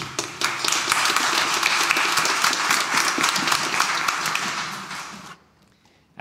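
Congregation applauding with many hands clapping, dying away about five seconds in.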